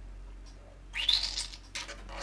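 A small plastic squeeze bottle of pearl white acrylic paint sputtering as it is squeezed onto the canvas. It gives two short, hissy spurts of air and paint, the first about a second in with a rising squeak, the second shorter near the end.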